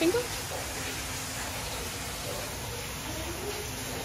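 Steady rushing room noise in a reptile house, with the end of a spoken word at the start and faint voices near the end.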